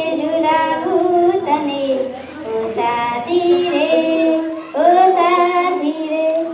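A young girl singing a song unaccompanied into a handheld microphone, with long held notes in phrases broken by short pauses for breath.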